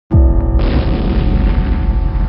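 Cinematic boom sound effect: a sudden deep hit at the very start whose low rumble sinks in pitch, then a loud rushing noise swells in about half a second in over sustained music tones.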